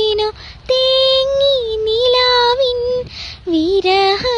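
A young woman singing solo, holding long notes with small pitch turns, with a short breath between phrases about half a second in and again about three seconds in.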